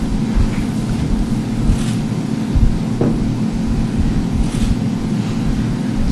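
Room rumble with irregular low bumps and shuffling as a group of people moves up to the front of a meeting room, over a steady low electrical or ventilation hum.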